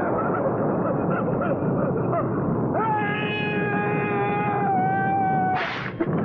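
Horror-film sound effects: a steady roar of noise with short wavering cries, then a long wail held for nearly three seconds, ending in a brief burst of noise just before the end.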